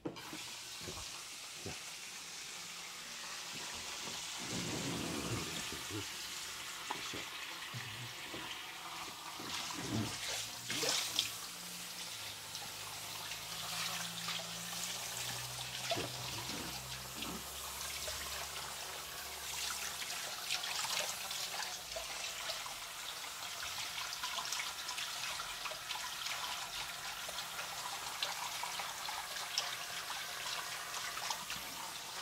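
Sink spray hose running steadily at a salon washbasin, water splashing over a client's head and into the basin as lather is rinsed out of his braided hair. A few short knocks sound about ten seconds in.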